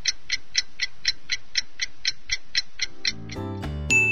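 Cartoon clock-ticking sound effect, about four even ticks a second, counting down the time to answer a quiz question. The ticking stops a little after three seconds in and children's music comes in.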